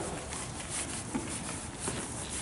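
Horse walking on the sand footing of an indoor arena: a few soft, irregular hoof thuds over a steady hiss.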